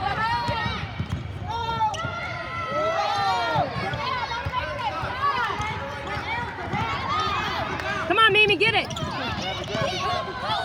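Players' sneakers running on a hardwood basketball court and a basketball bouncing, under the steady voices and calls of spectators.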